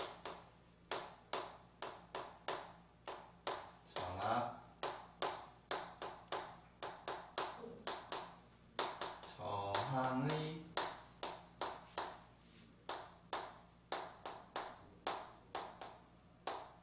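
Chalk writing on a blackboard: a steady run of sharp taps and short scrapes, two or three a second, as each stroke of the letters is made.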